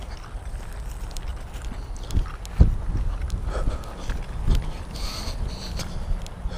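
Footsteps through dry grass and brush, with irregular low thumps, the loudest about two and a half seconds in.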